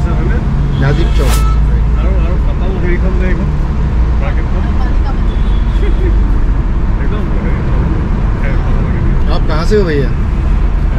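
Steady low rumble of engine and tyre noise heard inside the cabin of a moving car.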